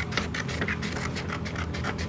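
Scissors cutting a sheet of paper, a quick run of short snips several times a second.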